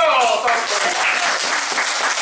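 Applause breaking out suddenly: many hands clapping in quick, dense claps, with a voice calling out as it begins.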